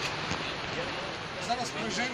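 Indistinct voices of people talking close by, over a steady rushing background noise.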